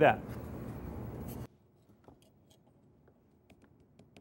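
Steady shop room tone for about a second and a half, then the sound drops out suddenly to near silence, with a few faint small clicks near the end.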